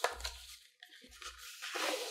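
Handling of thick paper and cardboard packaging: a sharp tap at the start, then paper rustling and scraping, louder near the end, as a padded carrying case slides out of its paper sleeve.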